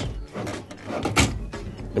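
A desktop PC's motherboard power connector is squeezed at its plastic latch and pulled out of its socket, with scraping and rattling of plastic and cables and a sharp click about a second in.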